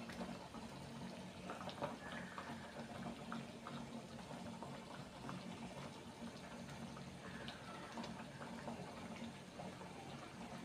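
Faint bubbling and small pops of a thick gravy simmering in a steel pot, over a low steady hum.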